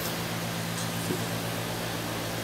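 A steady low mechanical hum over a faint hiss of room noise, with a small click about a second in.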